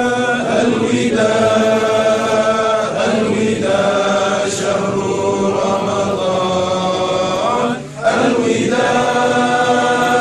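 Group of men's voices chanting a nasheed together in long, held notes, with a short break for breath about eight seconds in.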